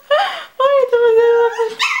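Small Shih Tzu dog giving a short yip, then a long, steady whine held for over a second.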